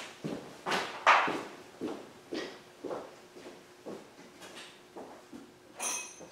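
Footsteps on a hard shop floor walking away, about two a second and fading as they go. Near the end comes a short metallic clink of a tool being picked up.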